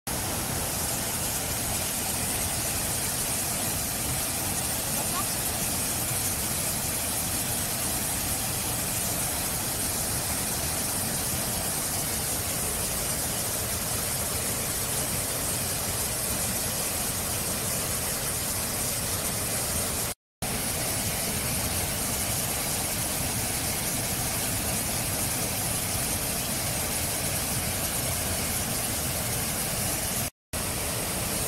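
Steady, loud rushing hiss of a high-pressure water jet blasting out of a pipe outlet into a wide spray. It drops out for a moment about two-thirds of the way through.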